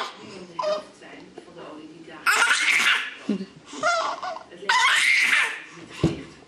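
A baby laughing in three bursts, about two, four and five seconds in.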